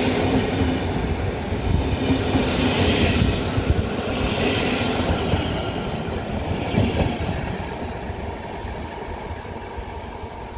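Passenger coaches of an intercity train rolling past at a platform, a dense steady rumble with occasional sharp wheel clicks. The noise fades over the last few seconds as the end of the train draws away.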